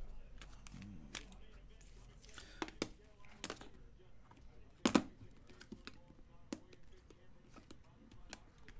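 Hard plastic trading-card cases clicking and tapping as they are set down and slid against each other on a cardboard box: a handful of short, sharp clicks, the loudest about five seconds in.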